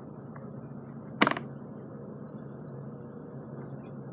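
Water bubbling steadily in the AeroGarden hydroponic reservoir, aerated by the air stone so the water can get air, over a low steady hum. One sharp click about a second in.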